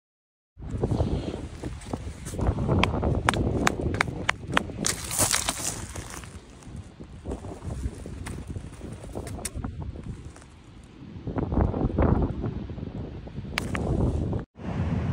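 Wind rumbling on the microphone over pebbles clicking and clattering on a shingle beach. The clicks come thick in the first few seconds and only now and then after. The sound begins about half a second in.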